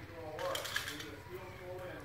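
Metal hay hook and its rope-and-pulley rig giving a brief, rapid clicking rattle about half a second in, lasting around half a second, as the hook is set into a load of loose hay.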